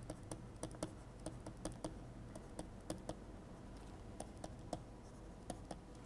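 Faint, irregular clicks of a stylus tapping and scratching on a pen tablet's hard surface as words are handwritten, a few clicks a second.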